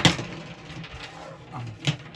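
A sharp knock of a hard object set down on a wooden tabletop, then the rustle and scrape of the lamp's plastic parts being handled, with another sharp click near the end.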